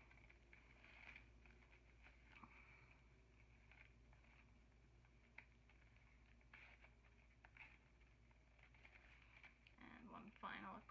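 Near silence with faint, scattered snips of scissors cutting through a thin paper coffee filter, a few seconds apart, over a low steady room hum.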